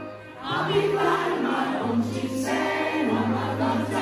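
Indie rock band playing live with singing, heard from within the audience; the music drops briefly just after the start, then the full band comes back in.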